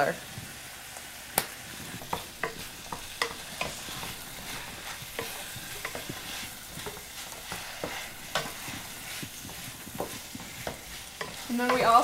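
Ground elk meat sizzling in a frying pan as it browns, with a wooden spatula scraping and tapping against the pan as it is stirred. The hiss is steady, broken by scattered clicks, the sharpest about a second and a half in.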